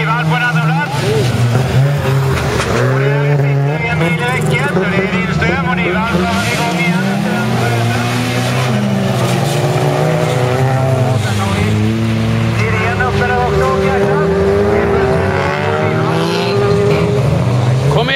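Several folkrace cars racing flat out, their engines revving hard. Many overlapping engine notes rise and fall in pitch as the cars accelerate and change gear through the bend.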